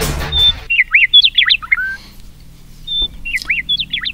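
A bird chirping and whistling in quick notes that slide up and down, in two bursts about two seconds apart. A strummed guitar tune cuts off in the first second.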